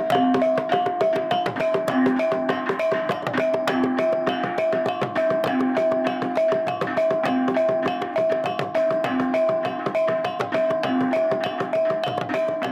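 Traditional percussion music: a fast, even clatter of wooden beats over two repeating pitched notes, one high and one low, keeping a steady cycle.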